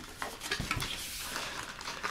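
Cardboard box flaps and a plastic bag rustling and crinkling as hands handle the packaged contents, with a few light clicks near the start.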